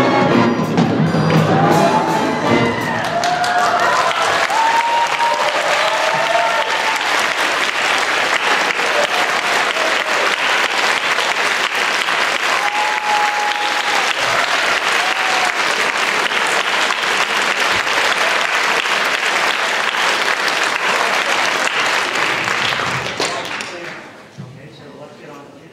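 A wind band's final chord rings out and stops about two seconds in, followed by audience applause with a few cheering shouts. The clapping dies away near the end.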